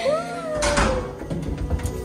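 A short meow-like cry that rises and then slides down in pitch, over background music.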